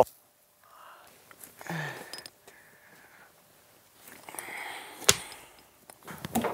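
Quiet handling sounds of a block of pottery clay being worked out of its plastic bag: soft rustling and scraping, with a sharp knock about five seconds in.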